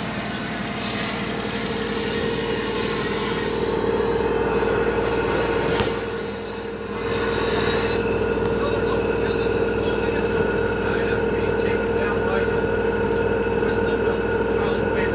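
LG direct-drive 8 kg front-loading washing machine on its 1200 rpm spin cycle: the drum spinning up, its steady motor whine and hum growing louder over the first few seconds, dipping briefly about six seconds in, then holding steady at speed.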